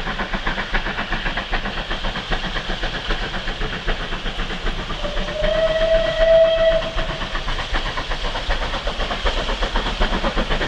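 Rebuilt Bulleid Merchant Navy Pacific 35028 Clan Line working hard up a steep 1-in-42 gradient, with a steady train of exhaust beats. About five seconds in, the steam whistle gives one blast lasting about two seconds, rising slightly as it opens.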